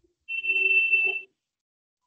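An electronic beep: one steady high tone lasting about a second, with a fainter low tone under it.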